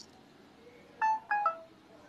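Two short electronic beeps from a phone, a fraction of a second apart, the second stepping down in pitch as it ends.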